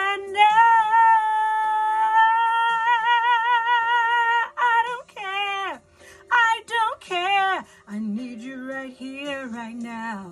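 A woman singing a soul ballad: she holds one long high note with a steady vibrato for about four seconds, then sings quick runs up and down with short breaks, settling onto low notes near the end.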